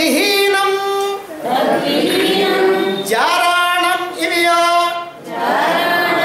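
A voice singing a slow melody in long held notes with gliding pitch, in phrases of one to two seconds broken by short pauses for breath.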